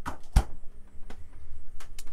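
Full-size residential refrigerator door pushed shut with a single thump a moment after the start, followed by a few light clicks.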